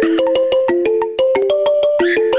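Fast singeli electronic dance track: a simple synthesizer melody stepping between a few notes over rapid, evenly spaced clicks. There is a brief drop in level just past a second in.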